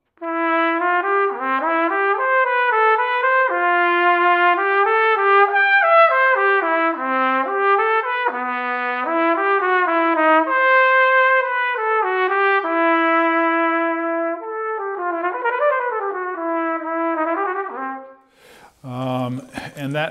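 Solo trumpet playing a connected, singing melodic line of a vocalise, note running into note, which stops near the end.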